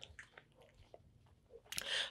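Faint, scattered small clicks and rustles from handling a pair of suede shoes, with a short breath near the end.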